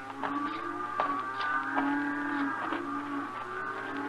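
Old-time radio sound effect of cattle lowing in stock pens: several long pitched calls overlapping and shifting in pitch.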